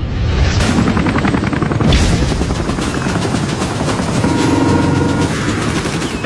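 Military helicopter flying low overhead, its rotor chopping rapidly, with a heavy boom about two seconds in.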